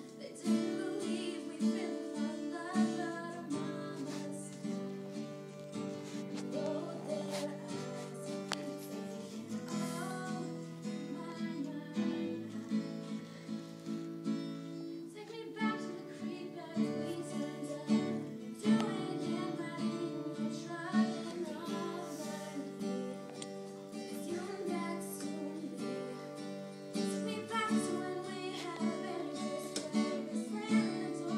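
A young woman singing to her own strummed acoustic guitar, playing steadily throughout.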